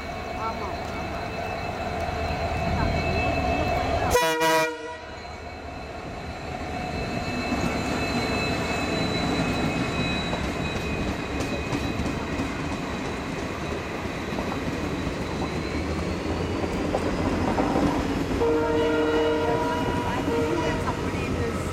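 Diesel-hauled passenger train running through the station at speed. The locomotive's horn sounds briefly about four seconds in, followed by the steady rumble and clatter of the coaches going by. A steady pitched tone returns near the end.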